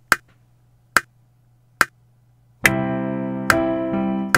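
DAW metronome clicking steadily, about one click every 0.85 seconds, as the recording count-in. About 2.6 s in, a software piano played from a MIDI keyboard comes in on a click with a held chord that rings on under the continuing clicks.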